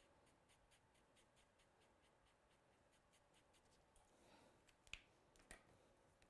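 Near silence. There is faint scratching and ticking of an alcohol-marker nib on card, and two small sharp clicks near the end.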